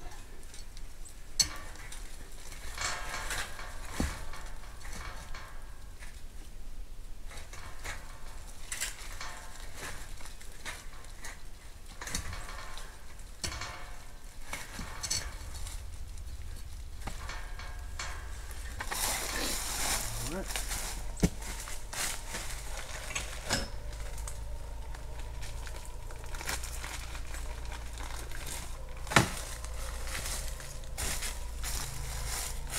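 Dry leaves rustling and light metal clicks and clinks as the wire hog trap's trip is handled and set, with a few sharper clicks, one about a second in and one near the end.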